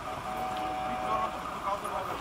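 Roadside accident-scene ambience: a steady hum of idling vehicles and traffic with faint voices of the crew and bystanders. A thin steady electronic tone sounds for about a second near the start.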